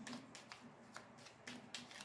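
Faint shuffling of a tarot deck: a run of short, crisp card flicks, about five in two seconds.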